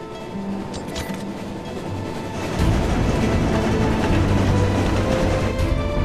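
Sound effect of an approaching train engine, Maxie's: a low rumble that sets in loudly about two and a half seconds in, under background music.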